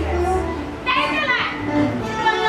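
Worship music with a steady bass note, while congregation members shout and sing over it in a large hall; one voice cries out loudly about a second in.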